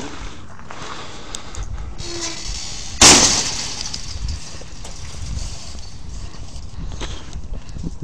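Rumble and low bumps of handling noise from a body-worn camera while walking with a metal detector. About three seconds in there is one sudden, loud, hissing crash that fades over about a second.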